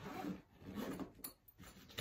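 Zipper on a fabric rolling sewing-machine case being drawn closed, a rasping zip in two pulls over about a second, then a couple of light clicks.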